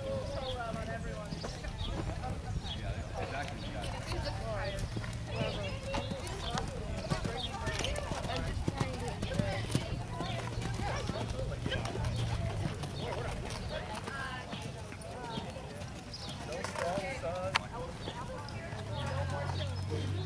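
Hoofbeats of a horse cantering and jumping on sand arena footing, over indistinct voices and a low steady hum.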